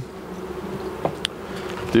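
Honeybees buzzing around an open hive, a steady hum, with one light knock about a second in.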